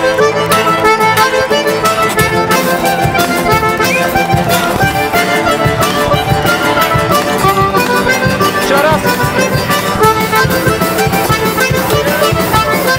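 Bayan (Russian button accordion) playing a tune over strummed acoustic guitar chords, instrumental with no singing.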